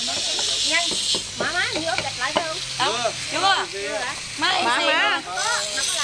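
Several people's voices in casual conversation, with a steady high hiss behind them that grows louder at the start and again near the end.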